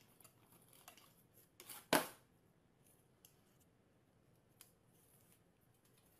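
A dog nosing about inside a cardboard box: faint scattered clicks and scrapes, with one sharp knock about two seconds in.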